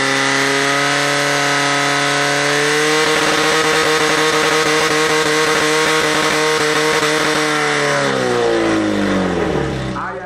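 Fire-sport competition pump engine running flat out while the team's attack run is pumping water. Its pitch rises a little about three seconds in, then sinks from about eight seconds as the engine winds down and stops.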